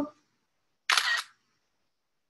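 Camera-shutter sound of a screen capture, a short two-part click about a second in, as a photo is taken.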